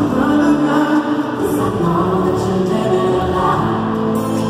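Live pop music recorded from the stands of an arena: a band led by an acoustic guitar, with singing that sounds like many voices together, as of a crowd singing along.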